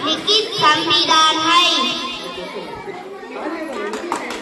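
A high singing voice ends about halfway through, leaving the chatter of many young schoolchildren.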